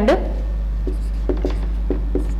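Marker writing on a whiteboard: a few faint short strokes as the letters go down, over a steady low hum.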